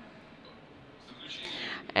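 A pause with low room tone, then an audible intake of breath close to a microphone, a rising hiss in the last half second or so before a man starts speaking again.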